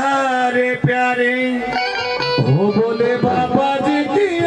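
Live Haryanvi bhajan accompaniment: harmonium and keyboard carrying a sustained, gliding melody over quick hand-drum strokes on dholak and tabla.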